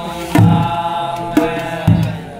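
Group of men singing a Kumaoni Holi song together in long, held chant-like lines, with a drum struck with sticks three times.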